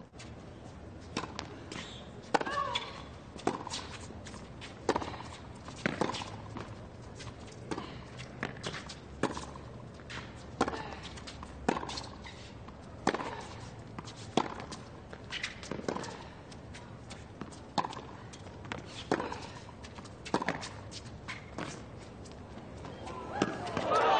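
Tennis ball struck back and forth by two players' rackets in a long rally, a sharp pop about once a second.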